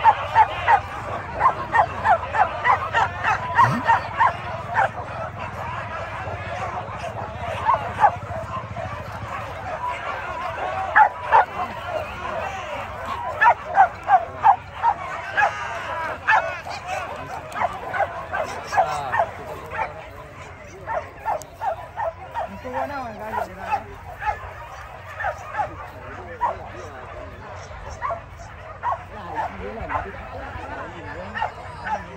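Hunting dogs yelping and barking excitedly in a rapid string of short, high calls, densest in the first half and thinning out later.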